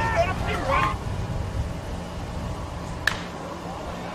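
A bat striking a pitched baseball: one sharp crack about three seconds in, over a steady low rumble of outdoor background noise.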